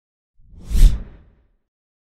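A single whoosh sound effect with a deep low boom under it, swelling quickly to a peak just under a second in and then fading out: the sting of a TV news channel's logo intro.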